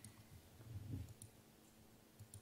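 Near-silent room tone with a few faint, sharp clicks, one near the start and two more a little past the middle.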